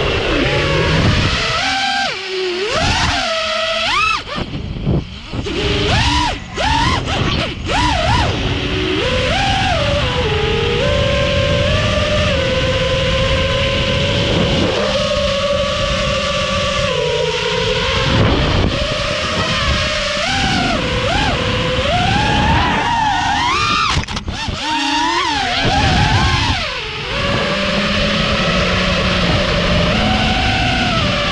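Onboard raw audio of a 5-inch FPV quadcopter's 2207 brushless motors and propellers: a loud whine that keeps rising and falling in pitch as the throttle changes, with wind rush over the camera. The sound drops away briefly several times, mostly between about four and eight seconds in and again near the end, where the throttle is chopped.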